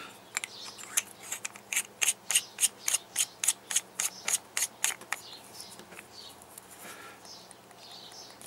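Threaded metal tube of an 18650 DNA30 tube mod being screwed together by hand: a quick, even run of small sharp metal clicks, about three a second, that fades out after about five seconds.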